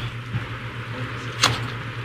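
A pause in speech: a steady low background hum with a faint noise floor, and one short sharp click about one and a half seconds in.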